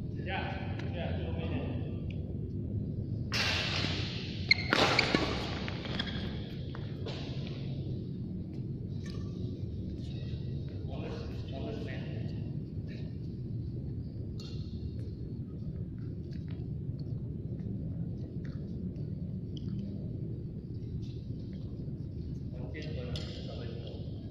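Sounds of a badminton game in a large hall over a steady low hum: a short cluster of sharp racket hits on the shuttlecock about five seconds in, which is the loudest moment, then scattered softer hits, footfalls and players' voices.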